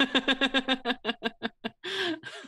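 A person laughing in a fast run of short pulses, about seven a second, that fade over a second and a half, with a breathy laugh near the end.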